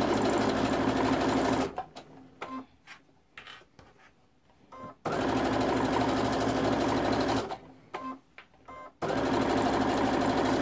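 Electric sewing machine stitching through layered cotton patchwork in three runs of a couple of seconds each. It stops twice in between, with faint clicks, while the stocking is turned at its curves and corners.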